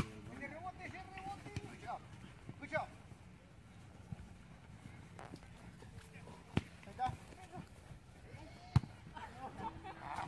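A soccer ball kicked several times on an open field, each kick a sharp thud, the loudest at the very start and about nine seconds in, among distant shouts from the players.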